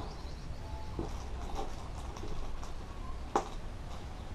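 Small lead airgun pellets and slugs being handled over a digital pocket scale: faint scattered clicks, with one sharp click a little over three seconds in.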